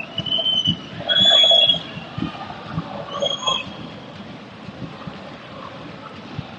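Football stadium ambience during play: crowd noise and shouts, with three short high-pitched whistles in the first half and scattered dull thuds.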